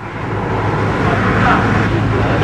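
Road traffic noise, a vehicle going past that swells to a peak about a second and a half in, over a steady low hum.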